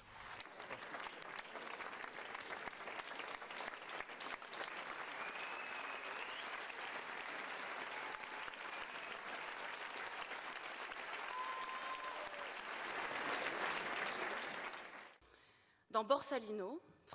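Audience applauding steadily, dying away about a second before the end. A couple of faint calls rise briefly above the clapping.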